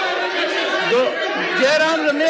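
Several men's voices talking and calling out over one another at once, with no one voice clear: a parliamentary chamber in uproar.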